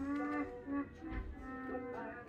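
Soft background music with long held notes.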